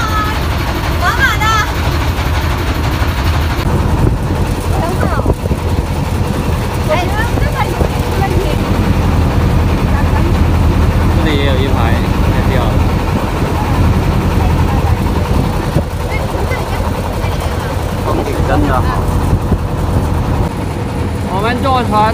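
A boat's engine running steadily under way, a deep continuous drone, with brief scattered voices over it.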